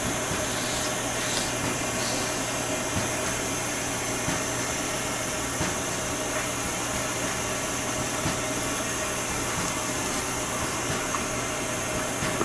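Propane torch flame burning with a steady hiss.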